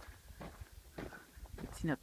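A few soft footsteps on a dry dirt path, about half a second apart, with a woman's voice resuming near the end.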